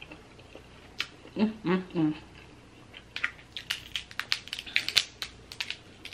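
Snow crab shells cracking and snapping as a cluster is broken apart by hand: a quick, irregular run of sharp crackles from about halfway in. Earlier comes a short wordless hum, "mm-mm-mm".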